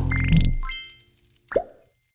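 Closing background music, a sustained low chord, fading out in the first second, overlaid with a short rising sweep and a small ding. About one and a half seconds in, a single cartoonish plop with a quickly falling pitch, a logo-animation sound effect.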